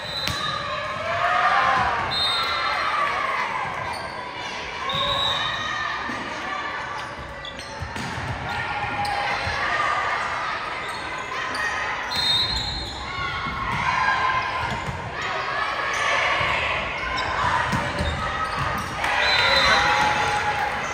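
Volleyball rally in a large gym: the ball being served and hit, sneakers squeaking on the hardwood court, and players and spectators shouting and cheering, with the sound echoing in the hall. The cheering and shouting are loudest near the end.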